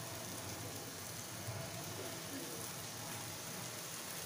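Soaked, drained Gobindobhog rice frying in a non-stick wok on a gas flame: a steady, quiet sizzle.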